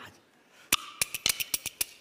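Kuaiban, Chinese bamboo clappers, clacking in a quick, uneven rhythm: about nine sharp clacks start a little over half a second in. This is the opening rhythm struck up before a kuaiban tongue twister.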